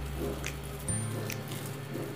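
Soft background music with steady low held notes that change about halfway through. A few faint clicks of plastic cling film being rolled by hand sound over it.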